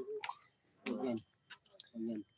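Crickets chirping steadily in the background, with a short, soft murmur of voices about a second in.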